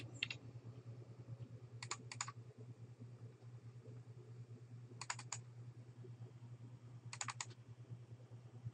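Faint computer mouse clicks in quick groups of three or four, four times about two seconds apart, the sound of double-clicking through folders, over a steady low hum.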